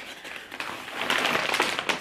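A gift bag rustling and crinkling as a hand rummages inside it, with small clicks of items being handled. It is louder in the second half.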